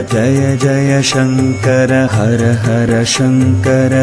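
Devotional Hindu chant music: a chanted melody over a steady low accompaniment, with two sharp high accents about a second in and again about two seconds later.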